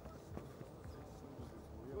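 A few soft, quick footfalls on grass: a footballer stepping fast through a line of training cones.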